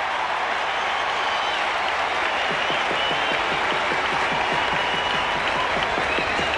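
Baseball stadium crowd applauding and cheering steadily, a home crowd's response to a base hit by their own batter.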